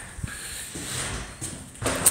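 Quiet footsteps and knocks in an empty log cabin with bare pine floors and walls, with one sharp thump just before the end.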